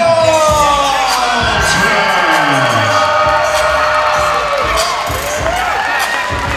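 A ring announcer's long drawn-out call of a boxer's name, held for about four seconds and slowly falling in pitch, over music and a cheering, whooping crowd in a large hall.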